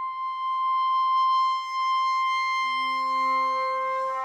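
Contemporary chamber music: a single high note is held for a long time, and about two and a half seconds in, lower sustained notes enter beneath it.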